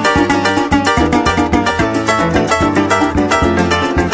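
Instrumental introduction of a música llanera (joropo) song: a harp plays fast plucked runs over a repeating bass line and a quick, steady strummed rhythm.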